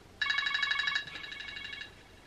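A phone ringing with an electronic ringtone for an incoming call. It gives one fast trilling ring of under two seconds, louder in its first half and then softer.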